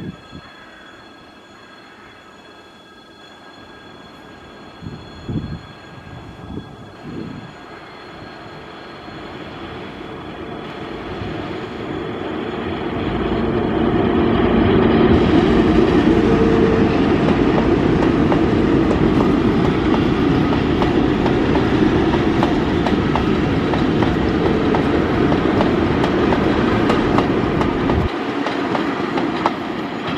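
A coupled set of VL10U and VL11.8 electric locomotives running light past at close range: the rumble grows for several seconds as they approach, then loud, steady wheel and rail noise with a hum as the units roll by.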